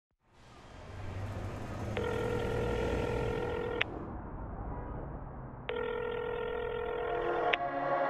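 Telephone ringback tone: two long steady beeps, each just under two seconds, the first about two seconds in and the second near the end, over a low hum.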